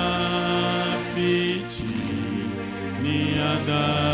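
A man sings a slow hymn through a microphone in long, held notes that slide from one pitch to the next.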